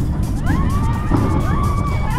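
Coaster riders screaming and whooping in drawn-out rising cries, over a heavy rush of wind buffeting the on-ride camera's microphone.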